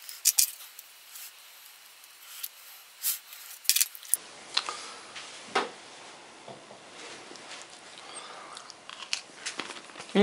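A dry cracker spread with pâté from a plastic spoon, then bitten and chewed: a few sharp cracks and clicks in the first four seconds, then fainter irregular crunching.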